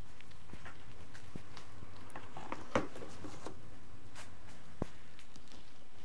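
Plastic seed tray of soil blocks being lifted and handled: scattered light knocks and rustles, the loudest about three seconds in, over a steady low hum.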